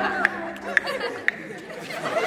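A choir's last held note dies away within the first second, leaving a murmur of chatter from many voices, broken by three sharp clicks.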